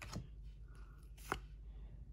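Faint handling of a small stack of trading cards as one card is slid from the front to the back, with two brief card clicks, one just after the start and a sharper one a little past halfway.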